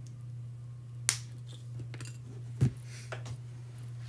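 Wire cutters snipping through jewelry wire: one sharp snip about a second in, followed by a few lighter clicks and a duller knock a little after the middle.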